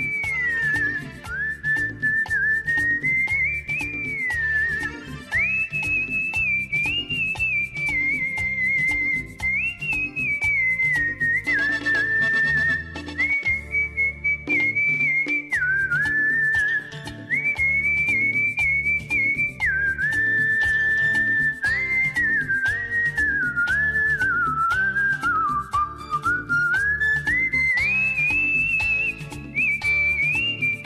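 A person whistling the melody of a Hindi film song in a single clear line, sliding between notes, over a recorded instrumental accompaniment with a steady beat. The tune dips lower a little before the end, then climbs back up.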